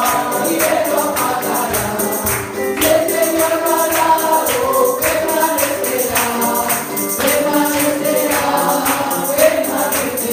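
Live congregational worship music: a church congregation singing a Spanish praise song together over a steady percussive beat.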